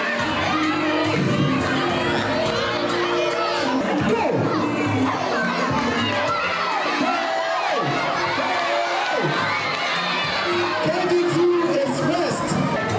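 A large crowd of young schoolchildren shouting and cheering on a footrace, many voices overlapping in a loud, steady din.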